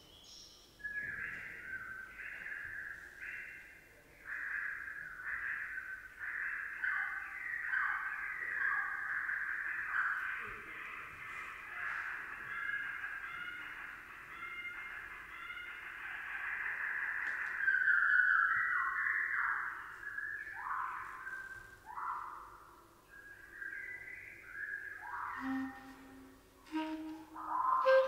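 A slowed-down recording of a marsh warbler's song played back: a long run of drawn-out, mostly downward-sweeping whistled notes in short phrases. Near the end, low held clarinet notes come in.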